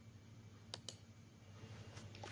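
Near silence with two quick clicks close together about three-quarters of a second in, from a computer mouse button, over a faint steady low hum.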